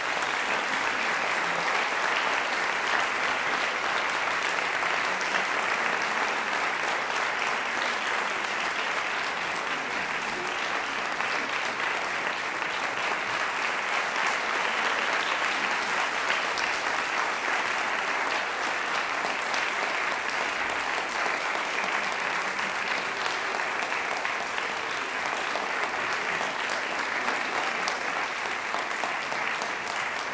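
An audience applauding after a song, a steady dense clapping that holds throughout and eases slightly near the end.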